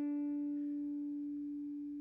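Electric guitar through an amplifier, one sustained note (the D that ends the lick's phrase) ringing out steadily and slowly fading.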